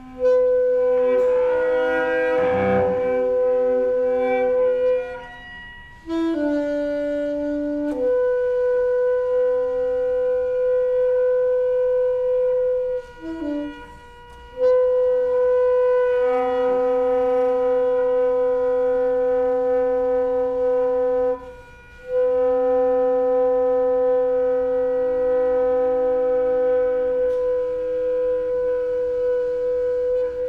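Alto saxophone and cello improvising together: the saxophone holds long, steady notes, about five phrases separated by short pauses, over held bowed cello tones.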